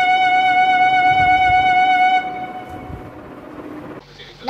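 Yamaha electronic keyboard holding one long note, which is released about two seconds in and fades away.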